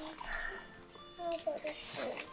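Quiet children's voices over soft background music, with a light click of plastic markers being handled near the end.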